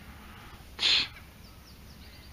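A person's single short, sharp breath close to the microphone, about a second in.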